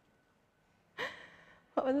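A woman's quick, audible breath, sharp at the start and fading over about half a second, about a second in after a near-silent pause.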